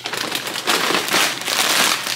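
A paper grocery bag rustling and a plastic bag of chips crinkling as the chips are pulled out, a continuous dense crackle.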